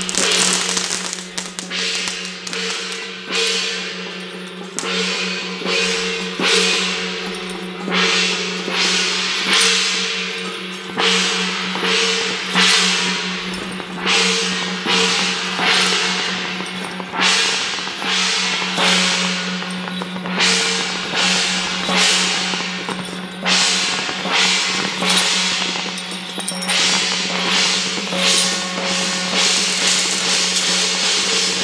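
Temple-procession percussion: large hand-held gongs and cymbals struck in a repeating beat, about one crash a second, each ringing on. A steady low ringing tone runs underneath.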